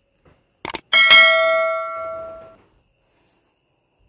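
Subscribe-button animation sound effect: a quick double mouse click, then a single bell chime that rings several clear tones and fades away over about a second and a half.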